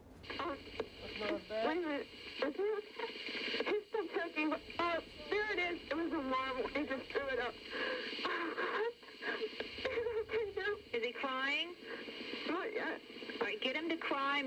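A toddler crying in repeated high wails, with a thin, phone-line sound.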